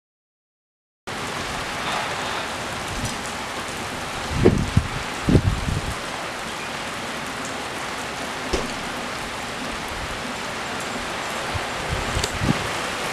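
Rain falling steadily in a storm, starting suddenly about a second in. A few louder low thumps cut through it a little before the middle.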